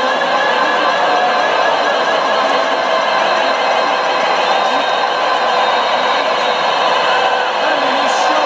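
Loud electronic dance music from the arena sound system, recorded from the crowd: held synth chords with no clear beat, thin and with almost no bass.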